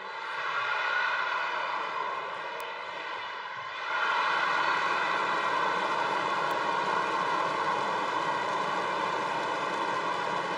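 Arena crowd noise between points, a steady roar of cheering that swells about a second in and rises louder again about four seconds in, holding there.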